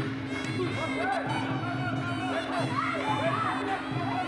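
Traditional Muay Thai ring music (sarama) playing during the bout: a gliding melody over a steady low tone, with crowd noise underneath.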